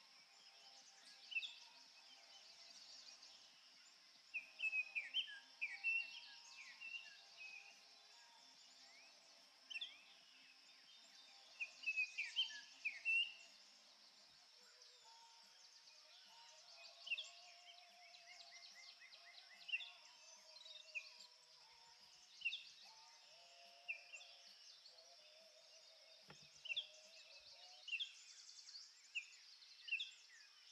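Quiet birdsong: short chirps and quick gliding calls, a few every couple of seconds, over a steady high hiss, with faint sustained low tones underneath.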